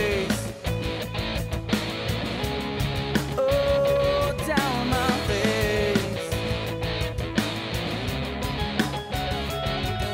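Rock music: electric guitar over a steady drum beat, with held, bending melody lines.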